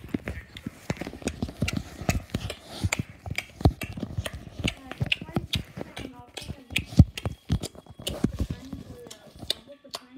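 Loud open-mouthed chewing close to the microphone: a quick, irregular run of wet smacks and clicks that eases off near the end.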